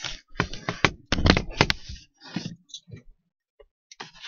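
Handling noise from a phone camera being moved and set in place against a truck's windshield: a quick run of knocks, clicks and rubbing that stops about three seconds in.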